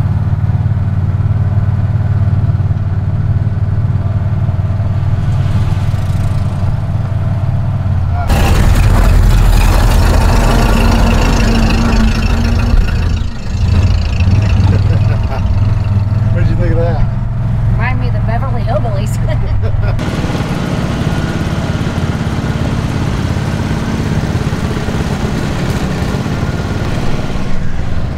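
An engine runs steadily while riding in a small utility cart. For about twelve seconds in the middle a louder, lower engine sound takes over, then it drops back to the steadier running.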